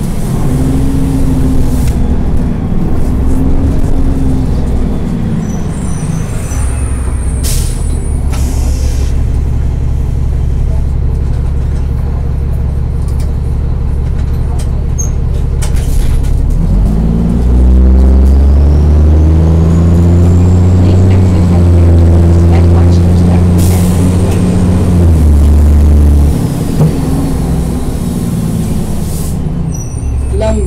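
Cummins M11 diesel engine of a 2000 NABI 40-SFW transit bus, heard from inside the passenger cabin. It winds up and down in the first few seconds and runs lower for about ten seconds, then revs up loudly about halfway through. It holds there before dropping off near the end. Short hisses of air cut in a few times.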